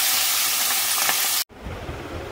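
Fish steaks frying in oil in a wok, a steady loud sizzle. It cuts off abruptly about one and a half seconds in, leaving quieter low room noise.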